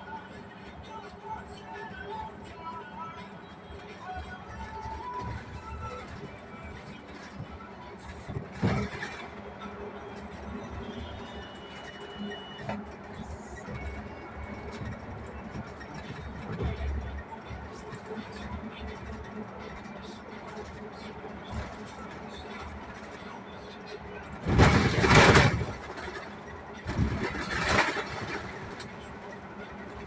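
Inside a moving bus: steady engine and road noise, broken by a short loud burst of noise about a third of the way through and two louder bursts near the end.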